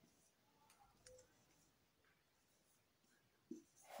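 Near silence, with a few faint scratches and clicks of a marker writing on a whiteboard about a second in.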